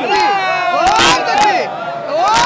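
A crowd of devotees shouting together, many voices overlapping in rising and falling cries, with a sharp burst about a second in.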